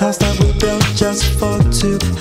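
Instrumental music with a steady beat and no vocals: deep kick drums that drop in pitch on each hit, under sustained bass and chord notes.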